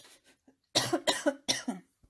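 A woman coughing, a short bout of several coughs in two bursts starting just under a second in.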